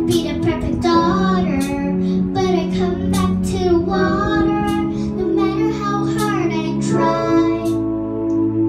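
A young girl singing a melody into a microphone, accompanied by an electric keyboard holding sustained chords.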